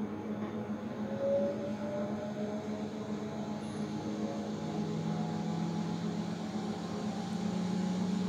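Benchtop microcentrifuge spinning at 11,000 rpm to pellet bacterial cells: a steady motor hum with several whining tones, one rising briefly about a second in.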